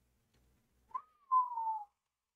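A person's short whistle about a second in: a brief rise, then one note sliding down in pitch for under a second.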